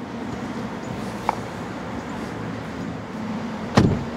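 A person climbing into a car's rear seat, over a steady background hum, with a small click about a second in. Near the end comes a heavy thump as the rear door shuts.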